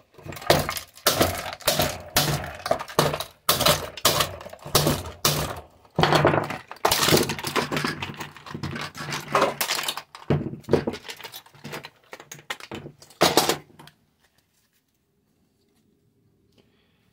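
White plastic nebulizer housing being knocked and forced apart with tools: sharp knocks about two a second, then denser cracking and snapping of the plastic casing. The sound stops near the end.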